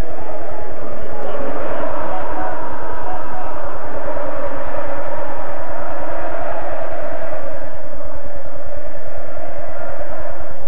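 Football stadium crowd singing and chanting together in the stands, a loud, continuous mass of voices celebrating a goal.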